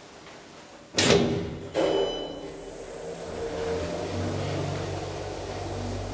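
A modernized KONE elevator's doors shutting with two loud clunks just under a second apart, about a second in. The car then starts off with a steady low hum under a thin high whine.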